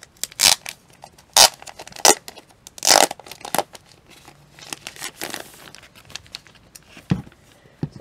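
Clear plastic shrink wrap being torn and pulled off a boxed album, in a series of sharp crackly rips and crinkles, the loudest in the first three seconds.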